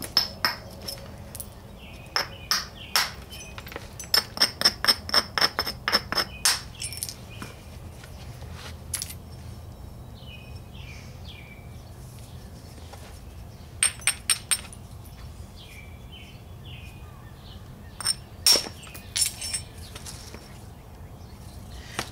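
Quartzite hammerstone striking and abrading the edge of an Edwards chert biface: sharp clinking taps, a quick run of about four a second around four to six seconds in, then scattered strikes, with the loudest ones about eighteen seconds in. The strokes are edge battering and platform abrasion, and flake removals to take the droop out of the biface's tip.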